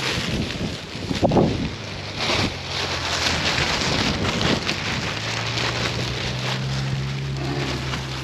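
Black plastic trash bag rustling and crinkling close to the microphone, busiest in the middle, with a low steady hum underneath in the second half.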